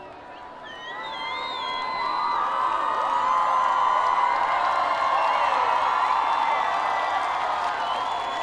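A live audience cheering and whooping, building over the first couple of seconds and then holding steady.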